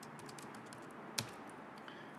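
Computer keyboard being typed on: a few scattered keystrokes, one louder tap a little past the middle.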